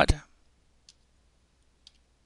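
Two faint keystrokes on a computer keyboard, about a second apart, as a command is typed.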